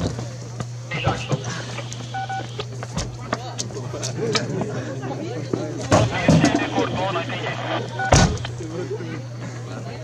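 Scattered clanks and knocks of a rally car's wheel being changed by hand on gravel, the sharpest about eight seconds in. A steady low hum runs underneath, and short two-tone beeps sound three times.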